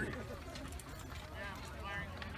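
People talking in the open air, several voices at once, with a few light clicks or knocks among them.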